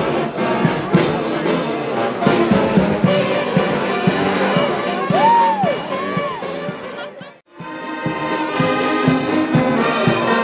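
Mummers string band playing: saxophones and accordions over a steady beat, with a couple of swooping notes partway through. The music cuts out abruptly for a moment about three-quarters of the way through, then comes back.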